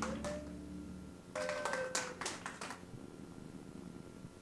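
The song's last chord dies away during the first second, then a few people clap sparsely in two short runs, the second a little over a second in.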